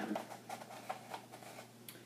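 Paper cone being handled and shaped: faint rustling of the sheets with a few light ticks.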